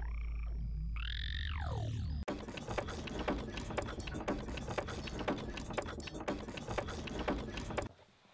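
3D printer stepper motors whining in rising and falling sweeps over a steady low hum as the print head moves. About two seconds in this gives way to a dense, irregular run of rapid clicks and rattles.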